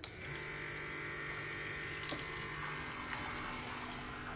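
Small cordless electric dispenser pump clicking on at a button press, then running steadily with a whir as it pumps liquid through its tubing and pours it into a glass with ice.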